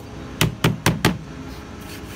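A hand striking the back of an insulated foam wall panel on a table: four quick knocks in the first second, then only a steady background hiss.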